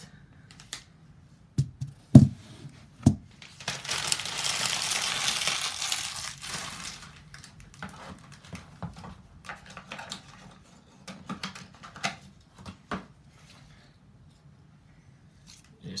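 Cardboard and paper packaging being handled in a computer box: a few sharp knocks, then about three seconds of loud rustling or tearing of packaging, followed by light taps and scrapes of cardboard inserts.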